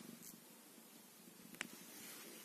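Domestic cat purring faintly, with a single short click about one and a half seconds in.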